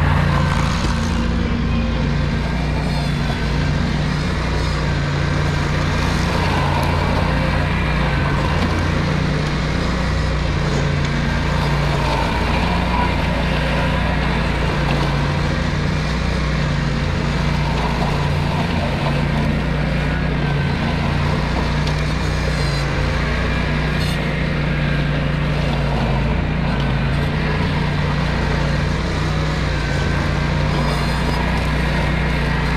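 Ventrac compact tractor running with its Tough Cut brush-cutter deck spinning as it mows overgrown brush, a steady engine-and-blade drone.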